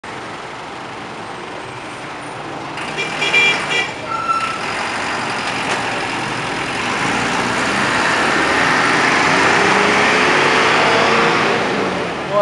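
Road traffic: a motor vehicle passing close by, its noise swelling over several seconds and loudest near the end, with a few brief high tones about three seconds in.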